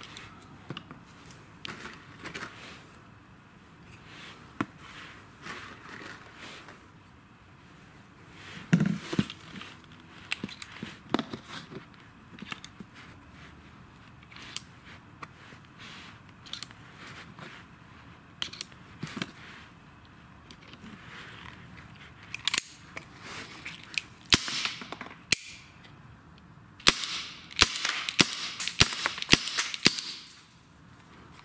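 Small sharp clicks and taps of a Well G293A airsoft revolver being loaded by hand: BBs pressed into its cartridge shells and the shells clicked into the cylinder. Near the end there is a quick run of louder clicks as the revolver is handled shut.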